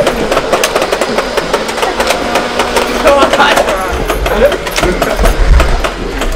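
Shouting voices with many short, sharp clacks of foam-ball Nerf blasters firing during a game.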